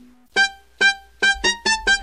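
Music: after a brief break, short staccato electronic keyboard notes, two spaced apart, then a quicker run of notes from about a second in.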